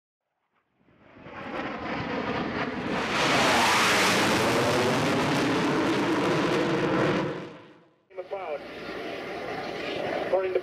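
Jet aircraft passing: the jet noise swells in, is loudest about three seconds in, and dies away by about eight seconds.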